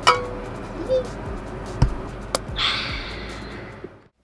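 Two stainless steel insulated mugs clinked together in a toast: one sharp metallic clink with a brief ring, followed by a couple of small knocks.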